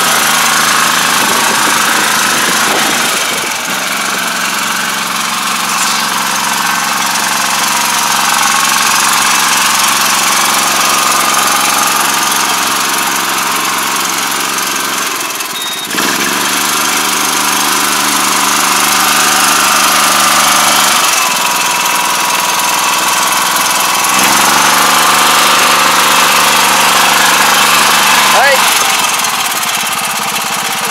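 Iseki five-row riding rice transplanter's engine running steadily under load as the machine drives through the flooded paddy and plants seedlings, with mechanical clatter from the machine.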